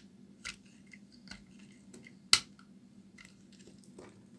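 A utility knife blade cutting into a hard, dry bar of white soap, with several crisp cracks as slices break away. The loudest crack comes a little past the middle, over a faint steady hum.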